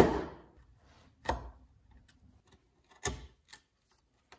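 Bench chisel chopping into a hardwood board at the baseline of box-joint fingers: a few sharp wooden knocks, the loudest right at the start, then single knocks about a second in and about three seconds in, with a faint tap just after.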